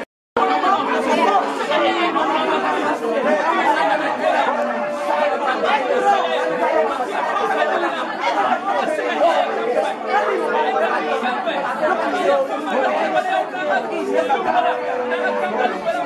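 A group of children praying aloud all at once, many overlapping voices making a dense, continuous din, with some drawn-out tones among them. The sound cuts out completely for a split second at the very start.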